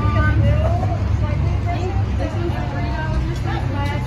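Indistinct conversation from several people at nearby café tables, over a steady low rumble.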